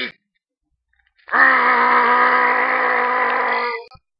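One long vocal cry held at a steady pitch for about two and a half seconds. It starts just over a second in, after a short silence, and fades out near the end.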